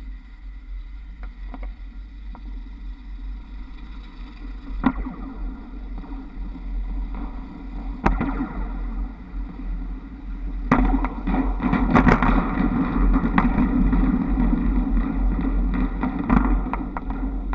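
Running noise picked up by a camera on a trolleybus's trolley pole: wind rushing over the microphone and the pole's collector shoes sliding along the overhead wires, with sharp clicks as the shoes pass fittings on the wire. The rushing grows clearly louder about two thirds of the way through, with a cluster of clicks.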